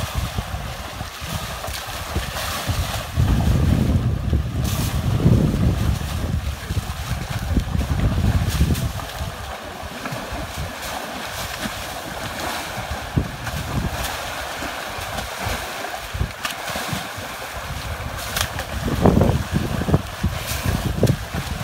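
Wind buffeting the microphone in heavy low gusts, strongest in the first half, over water sloshing and splashing as elephants wade and bathe.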